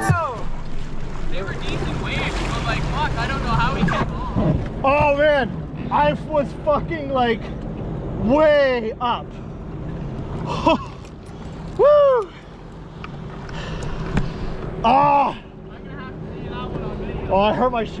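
Sea-Doo personal watercraft engines running at idle, a steady low hum, with voices calling out loudly over it several times.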